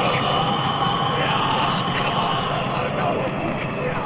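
Indistinct voices under a steady, loud rushing noise with a low rumble; no music is playing.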